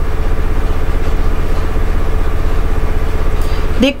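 A steady, loud low hum with rapid pulsing and a faint constant tone above it, with no other event. A woman's voice starts right at the end.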